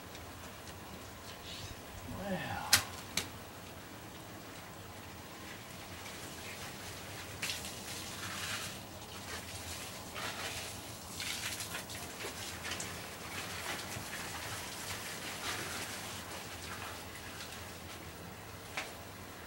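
Irregular hissing splashes of water from a running garden hose, with rustling as the hose is pushed among stiff succulent leaves. A sharp click and a short falling sound come about three seconds in.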